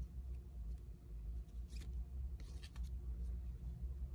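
Photocards sliding against one another as a stack is flipped through by hand: a few short, soft scraping slides near the middle, over a low steady rumble.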